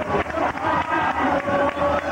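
Many voices singing a samba together over samba percussion with a fast, steady beat.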